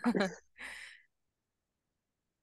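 A brief laugh that ends in a breathy exhale about half a second later.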